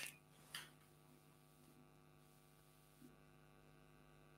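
Near silence, with a faint steady electrical hum and one soft brief tap about half a second in.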